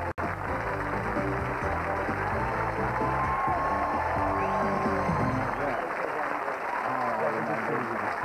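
Studio audience applauding over music, with a split-second dropout in the sound just after the start.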